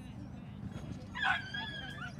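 A dog gives one loud, high-pitched, drawn-out yelp a little past halfway through, over low background murmur.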